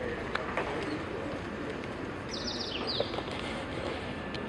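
Steady outdoor background noise with a bird chirping twice in quick succession, two short falling calls a little past two seconds in, and a few sharp clicks of shoes on pavement.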